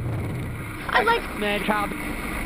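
A person's voice calling out briefly, starting about a second in, over steady background noise.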